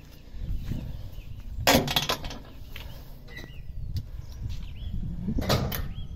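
Two sharp clunks about four seconds apart over a steady low rumble, from the road barrier and STOP sign of a canal swing bridge being handled as the bridge is worked by hand.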